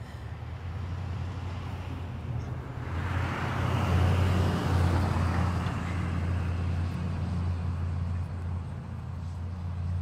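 A motor vehicle passing by: a steady low engine hum with road noise that swells to its loudest about four seconds in, then eases off.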